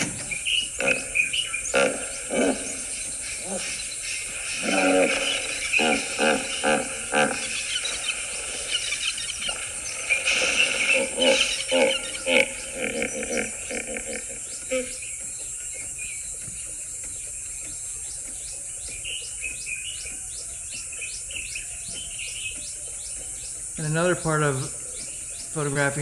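Hippopotamuses grunting and honking in a run of deep, pulsed calls, followed by a quieter stretch of crickets and birds chirping steadily. Two louder falling calls come near the end.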